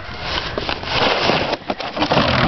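Orange plastic sled scraping over a bare dirt and leaf-litter slope, a rough noise that grows louder about a second in as it slides close past.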